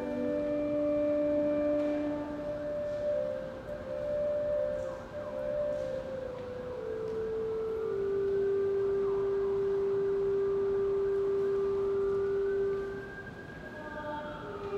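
Pipe organ playing slow, held notes. The melody steps down in pitch to one long low note, held for several seconds, that fades near the end.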